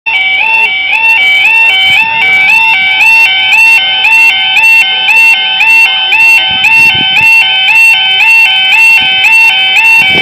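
Level crossing audible warning alarm sounding continuously, a loud electronic two-tone warble that alternates rapidly between two pitches. It signals that a train is approaching and that the barriers are about to come down.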